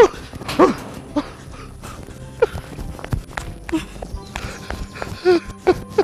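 A person sobbing and crying out in distress: a handful of short wailing cries that rise and fall in pitch, over faint background music.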